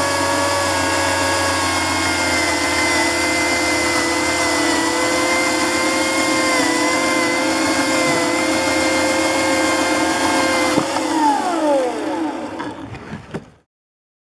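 Chainsaw mounted upright in a cutoff table, running steadily at high speed as its bar cuts through a block of ice. About eleven seconds in its pitch drops as it slows, and the sound dies away just before the end.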